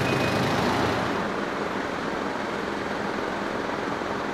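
Road traffic: a steady rush of noise, with a vehicle's low engine hum fading out during the first second.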